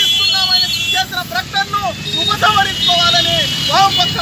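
A man speaking loudly and forcefully, with steady low background noise underneath.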